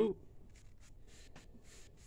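Paintbrush bristles brushing thick tire dressing onto a rubber tire sidewall: faint, soft strokes, about three a second.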